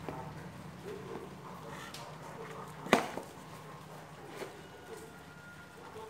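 Handling noise from an aluminium gearbox being turned over by gloved hands: faint rubbing and shuffling, with one sharp knock about three seconds in.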